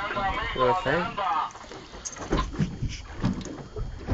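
Men's voices talking excitedly for about the first second and a half, then wind and water noise around a small boat, with a few faint knocks.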